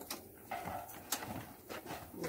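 Clicks and light knocks of a latch being worked on an old wooden plank gate as it is unfastened, several separate sharp clicks spread over two seconds.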